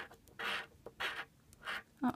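A coin scratching the coating off a paper scratch-off lottery ticket, in about four short strokes roughly half a second apart.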